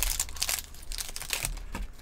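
Wrapper of a baseball card pack crinkling as it is opened by hand: a dense run of small crackles, loudest in the first half second.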